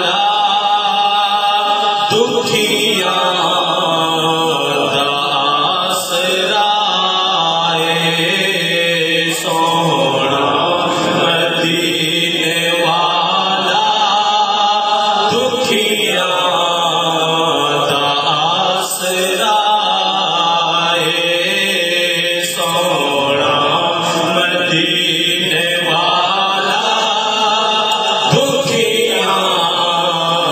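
A man's solo voice chanting a naat unaccompanied into a handheld microphone over a PA, in long melodic phrases of a few seconds each with brief breaths between.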